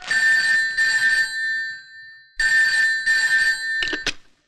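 Desk telephone ringing in a double-ring pattern: two short rings, a pause of about a second, then two more. Near the end the handset is lifted off its cradle with a short knock, cutting the ring off.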